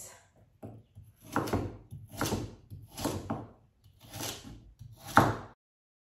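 Kitchen knife slicing through carrot onto a wooden cutting board: a slow series of cuts, about one a second, the last the loudest. The sound cuts off suddenly near the end.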